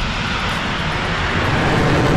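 Rocket engines running at liftoff: a loud, steady rushing noise with a deep rumble, swelling slightly toward the end.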